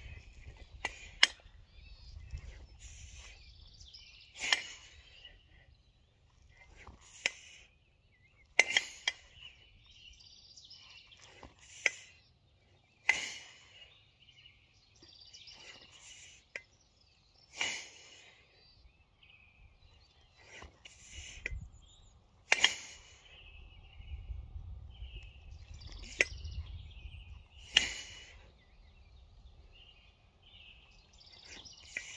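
Two 24 kg kettlebells being jerked in a steady set: a sharp clink of the bells with each rep, about every four to five seconds, with fainter knocks between. Birds chirp in the pauses.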